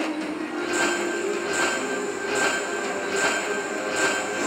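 Medusa Unleashed video slot machine tallying its bonus win: a bright electronic chime repeats a little faster than once a second, starting about a second in, over the game's steady background music.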